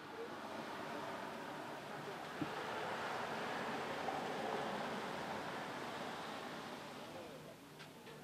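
A minivan driving past on a residential street, its tyre and road noise swelling to a peak about halfway through and then fading away.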